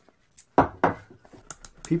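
Two dull knocks, then a quick run of small, sharp clicks near the end as a small electrical switch freshly sprayed with DeoxIT contact cleaner is handled.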